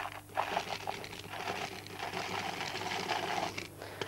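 Dried red kidney beans poured into a clear plastic container, landing on a layer of dry pasta spirals as a dense, rapid patter of small clicks that stops shortly before the end.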